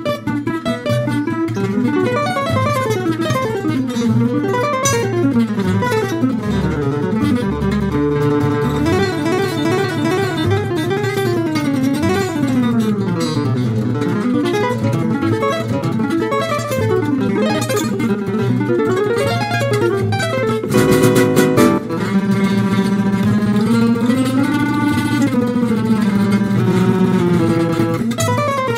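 Gypsy jazz trio playing live at a very fast tempo, about 300 beats a minute: a gypsy jazz acoustic guitar solos in rapid single-note runs that climb and fall, over a strummed rhythm guitar and a plucked double bass. A louder, denser flurry of notes comes a little past two-thirds of the way through.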